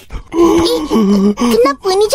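A cartoon boy's voice wailing a drawn-out "oh, oh", holding each note and stepping the pitch up and down.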